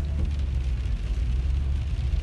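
Steady low rumble of a car heard from inside its cabin as it rolls slowly along a wet street: engine and tyre noise.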